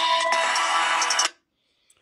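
Hip-hop beat playing through smartphone loudspeakers in a speaker loudness test. It cuts off suddenly a little over a second in as playback is stopped.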